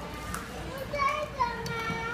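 Children's high-pitched voices talking, a few short bursts of speech that rise and fall, over a low steady background hum.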